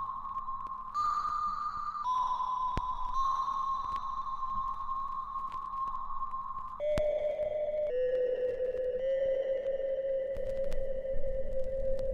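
Ambient electronic music: a held synth tone that steps between notes and drops lower about seven seconds in, with a few faint clicks.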